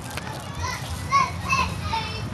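Children's high-pitched voices calling out in a few short squeals and shouts, the loudest about a second in, over a steady low crowd hum.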